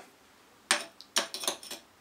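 A short run of light, sharp clicks and clinks as a 2-inch star diagonal's barrel knocks against the refractor focuser's 1.25-inch adapter, which it will not fit.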